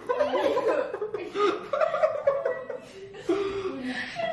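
A young man chuckling and laughing, mixed with some talk.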